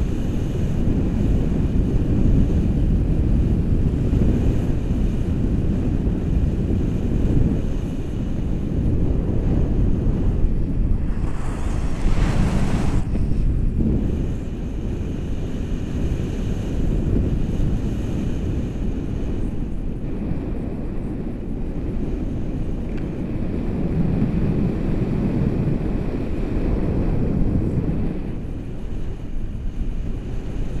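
Steady low rumble of wind buffeting a handheld action camera's microphone in paragliding flight, with a brief louder hiss about twelve seconds in.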